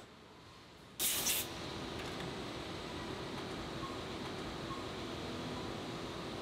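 Machine-shop floor ambience. After a near-quiet first second, a sharp hiss lasts about half a second, then the steady, even noise of running machinery continues with a faint hum.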